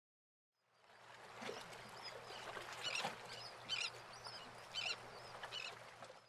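A steady background wash with a low hum fades in about a second in, with short, high bird calls sounding several times over it.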